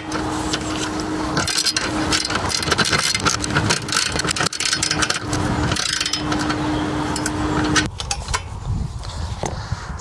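Steel spanners tightening a nut and bolt on a solar panel mounting bracket: rapid metallic clicking and rattling that stops about eight seconds in, with a steady hum underneath.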